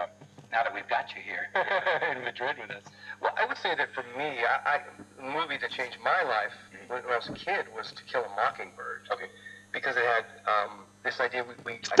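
A Becker Mexico valve car radio playing a spoken broadcast through its loudspeaker, under a steady low hum.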